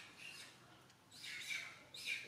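Macaque slurping water from a metal basin, a rhythm of short wet sucking bursts, a weak one early and a stronger run in the second half.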